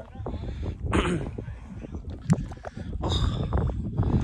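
Mud volcano vent bubbling: gas bursting up through thick wet mud in wet blurps, with a strong one about a second in and a sharp loud pop a little after two seconds. This is the escaping gas, mostly methane, that drives the volcano.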